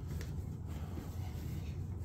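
Bread dough being kneaded by hand on a countertop: soft pushing and rubbing of the dough against the counter, over a low steady hum.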